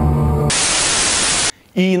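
Music cuts off half a second in and gives way to a loud burst of TV-style static hiss, lasting about a second and stopping abruptly: an editing transition between segments. A man starts speaking just before the end.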